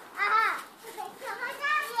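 Young children's high-pitched voices calling out as they play: one short call about a quarter second in, then another building near the end.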